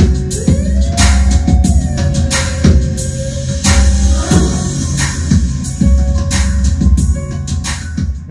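Loud music with a drum kit and deep bass, played through a pair of Cerwin-Vega SL-12 floor-standing speakers driven by a Denon AVR-X4700H receiver and picked up by a camera mic. The receiver has not yet been calibrated or equalised, so it is playing flat.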